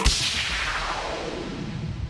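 A single sharp impact sound effect right at the start, like a logo hit, followed by a long reverberating tail with a low rumble that slowly fades.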